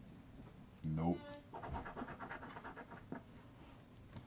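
A coin scraping the latex coating off a scratch-off lottery ticket in a run of quick, faint strokes. There is a short murmur of voice about a second in.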